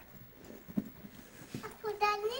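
A few soft knocks and taps, with a child's voice starting near the end.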